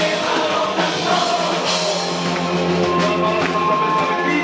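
Live rock band playing loud: electric guitar, keyboard and drum kit with a singer on vocals.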